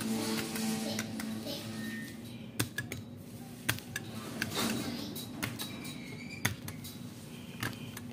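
Videoke machine playing faint music, with held notes in the first couple of seconds, and several sharp clicks from its push buttons scattered through.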